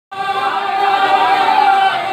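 A man singing an Urdu naat into a microphone, holding a long steady note.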